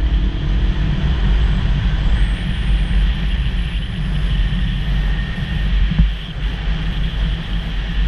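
Wind noise on a motorcycle-mounted action camera at road speed: a steady, heavy rumble with a hiss above it.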